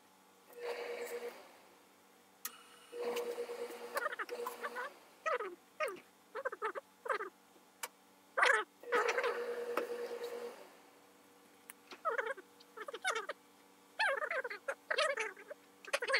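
Hands working a suit jacket's wool fabric and lining on a cutting table: rustling and short scraping strokes, with longer rasping strokes about a second in, from about three to five seconds, and again around nine to ten seconds.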